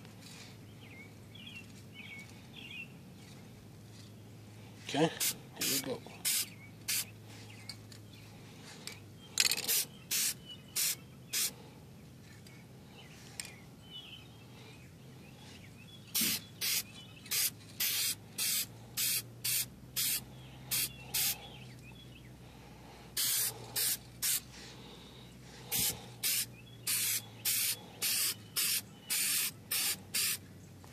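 Aerosol can of general-purpose spray paint being sprayed in short hissing bursts, each about half a second. The bursts come in quick runs separated by pauses as a coat goes onto an alloy wheel rim.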